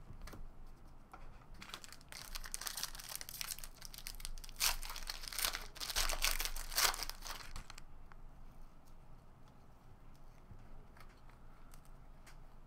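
A foil trading-card pack wrapper, 2009-10 Upper Deck Basketball, torn open and crinkled by hand from about two seconds in until nearly eight seconds. The crackling peaks in a few sharp rips around the middle.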